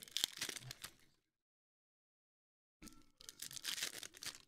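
Foil trading-card packs being torn open and crinkled by hand. There are two bursts of ripping and crackling with about a second and a half of dead silence between them.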